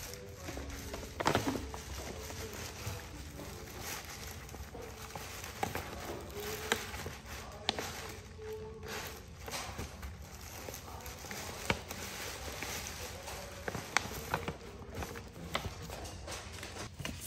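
Paper gift bag and tissue paper crinkling and rustling in irregular short crackles as a Boston terrier noses into it, with faint music in the background.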